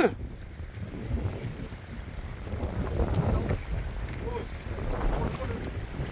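Wind buffeting the microphone, a steady low rumble with faint voices heard now and then in the background.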